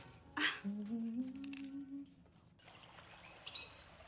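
A person humming a short phrase of a few notes that step upward, after a brief breathy sound. Near the end comes a soft hiss with faint high chirps.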